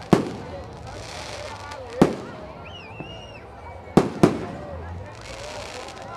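Aerial fireworks bursting: a sharp bang at the start, another about two seconds in, and two in quick succession about four seconds in.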